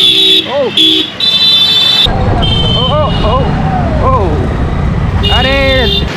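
Vehicle horns honking in busy street traffic: several short beeps and a longer blast in the first two seconds, more beeps later, and a long blast near the end, with voices calling out between them. From about two seconds in, a steady low traffic rumble runs under it.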